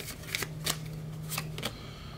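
A tarot deck being shuffled by hand: a few sharp card snaps over a faint steady low hum.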